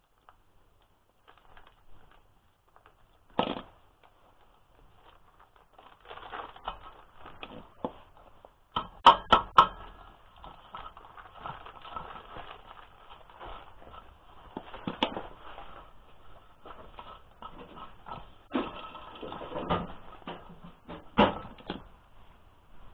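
Pliers and small metal parts of a rotary mower (knife segments, bolts) being handled and fitted: scattered metallic clicks and taps, with three sharp clinks about nine to ten seconds in.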